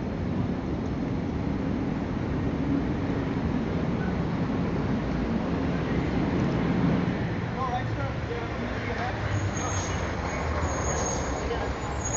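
Street traffic noise with a nearby car engine idling as a steady low hum that fades after about seven seconds, with distant voices. A thin high tone is heard near the end.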